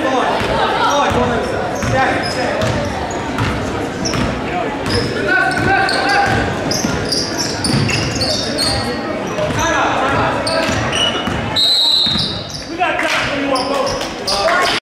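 A basketball dribbling on a hardwood gym court, with brief high squeaks, under constant spectator chatter and calls echoing around the gym.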